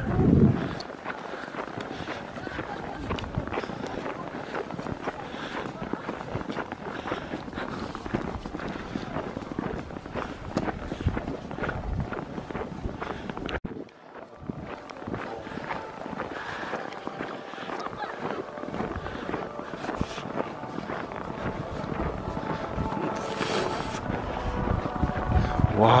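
Footsteps on snow from people walking along a path, with voices of other people around them. Faint music starts to come through near the end.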